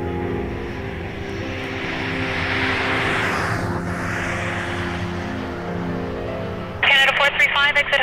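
Jet airliner engines on final approach: a broad rushing noise that swells about three seconds in and then eases, over a low steady drone. Air traffic control radio speech starts near the end.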